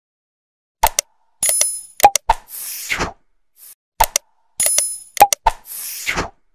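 Subscribe-button animation sound effect: quick mouse clicks, a bell ding and a whoosh, played twice about three seconds apart.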